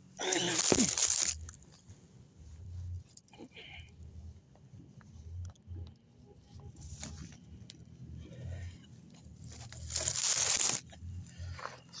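Phone microphone rubbing and scraping against clothing or a hand while the phone is handled, with two loud rough scrapes about a second long at the start and around ten seconds in, and soft crunches and thumps between.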